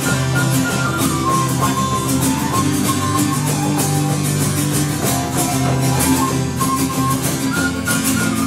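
Live folk-punk band playing an instrumental passage: strummed acoustic guitar in a fast steady rhythm over a bass line, with a high melody line on top and no singing.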